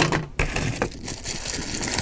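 Clear plastic packaging bag rustling and crinkling as it is picked up and handled, with a couple of light clicks.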